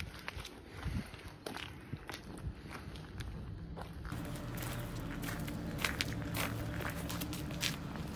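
Footsteps on loose gravel, irregular steps throughout. About halfway, a steady low hum joins them.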